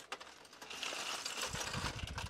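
Plastic toy bricks clattering in a 3D-printed plastic sorter tray as a hand sifts and pours them through, a dense run of small clicks that thickens about halfway in, with a few dull knocks near the end.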